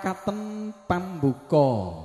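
A man's voice in a drawn-out, chant-like announcing style: a few short sung-spoken phrases, the last one sliding down in a long falling note.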